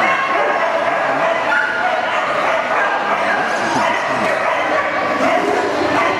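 Dog barking and yipping repeatedly, with voices in the background.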